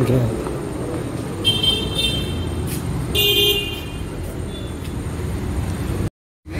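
Vehicle horns honking twice in street traffic, a toot of just under a second about a second and a half in and a shorter one about three seconds in, over a steady traffic rumble.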